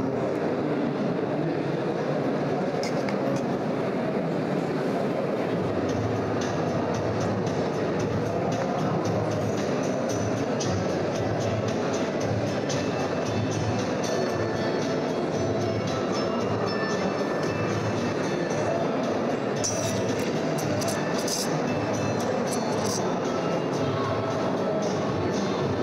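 Background music with a steady low beat, played over speakers.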